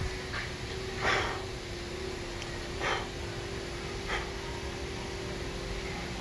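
Three short, breathy puffs, a person breathing close to the microphone, about one, three and four seconds in, over a steady low hum.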